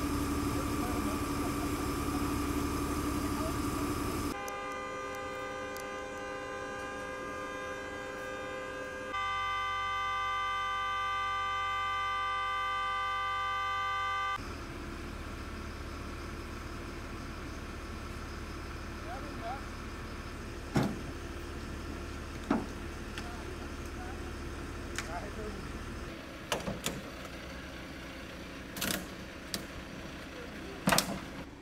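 A car horn sounding steadily for about ten seconds, louder in its second half. Then a low steady hum with a few sharp knocks and clatters.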